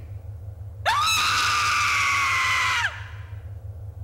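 A woman's long, high-pitched scream, about two seconds, rising sharply at the start and sliding slowly down before it breaks off, over a steady low hum in the anime soundtrack.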